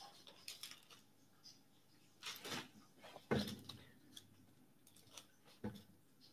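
Faint, scattered rustles and light clicks of song-sheet pages being leafed through in a folder. There are a few short handling sounds, the clearest about two, three and a half and five and a half seconds in.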